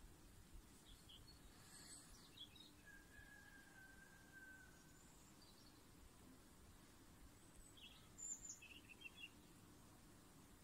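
Near silence: a faint outdoor background with a few faint, brief high chirps about two seconds in and again near the end.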